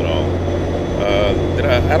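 Steady low drone of a vehicle running at highway speed, with snatches of talk over it.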